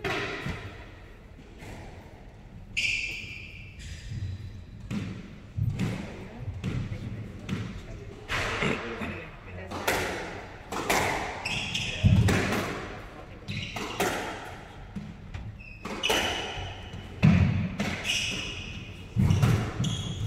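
A squash rally: the ball struck by rackets and smacking the front and side walls again and again, each hit ringing in the enclosed court. Short, high squeaks of court shoes on the wooden floor come now and then.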